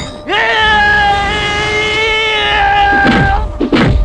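A long, high, held vocal cry over film music, rising at its start and held for about three seconds. Near the end, falling whooshes and a heavy hit.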